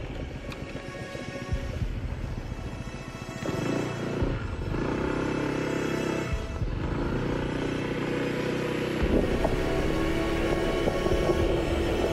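Background music with sustained tones, growing louder about three and a half seconds in, over the low running noise of a Honda ADV160 scooter riding on a gravel road.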